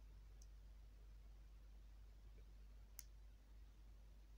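Near silence: room tone with one sharp click about three seconds in and a fainter tick near the start.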